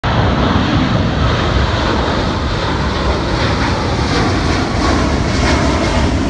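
Jet airliner climbing out after takeoff: loud, steady jet engine noise with a deep rumble and a faint whine that slowly falls in pitch as it moves away.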